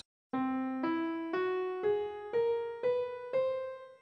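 A piano plays the Katanimic scale (scale 3409) as an ascending run of seven single notes, C, E, F♯, G♯, A♯, B and the high C, evenly paced about half a second apart. The top C is left to ring out and fade.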